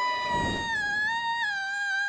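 A cartoon girl's long, high-pitched scream held on one note, dipping slightly in pitch near the end, with a low whoosh about half a second in.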